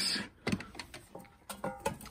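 Objects being rummaged by hand in a cardboard box of old glass bottles and metal items: scattered knocks and a few short clinks that ring briefly, mostly in the second half.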